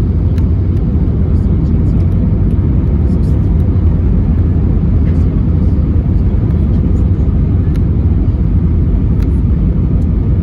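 Steady, loud low rumble of airflow and engine noise inside the cabin of an Airbus A320neo descending on approach.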